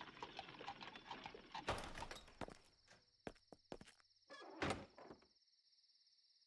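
Faint hoofbeats clip-clopping on an anime soundtrack, with a couple of louder knocks, ending about five seconds in. A steady, pulsing, high insect-like chirring starts about two seconds in and carries on.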